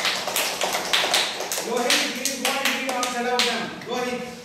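A group of schoolchildren and their teacher clapping together in a quick run of claps, a round of praise for a correct answer. Voices run over the middle stretch.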